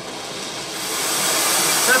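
Oxy-acetylene torch flame hissing, growing louder over the first second or so as the gas is turned up for more heat, into a steady rush that sounds like a space shuttle.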